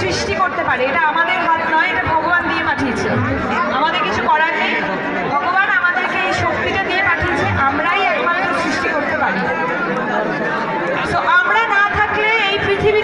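Crowd chatter: many voices talking at once and overlapping, loud and steady.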